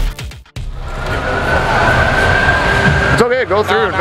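Background music cuts off abruptly, followed by a brief near-silent gap. Then street noise with a steady high-pitched whine comes in. A man's voice starts about three seconds in.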